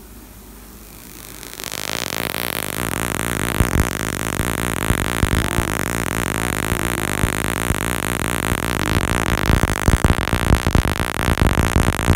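Harsh electrical buzzing noise that starts suddenly about a second and a half in and then holds loud and steady, crackling more near the end.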